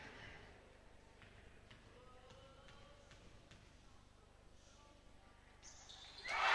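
Near silence: faint arena room tone with a few faint ticks, and noise starting to rise right at the end.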